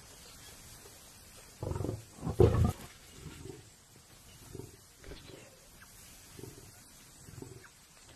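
Lions snarling and growling over a kill, the dominant lion warning others off his food: two loud snarls about two seconds in, then a string of softer growls.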